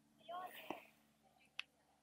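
A brief, faint voice-like sound about half a second in, followed by a couple of soft clicks.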